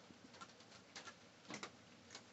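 Raccoon chewing dry cat food kibble: faint, irregular crunches, with a few louder ones about a second in and again half a second later.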